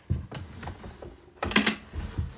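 Wooden dresser drawer being rummaged and handled: scattered light clicks and knocks, with a cluster of sharper knocks about one and a half seconds in.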